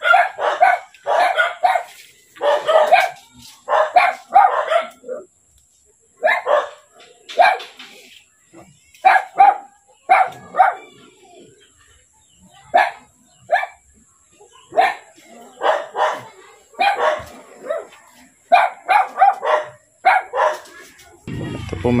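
A dog barking over and over, in runs of several sharp barks separated by pauses of about a second.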